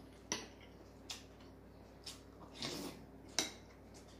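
Metal fork and spoon clinking against a ceramic soup bowl while eating, about four sharp clinks with the loudest a little after three seconds in. A longer, softer noise comes just before it.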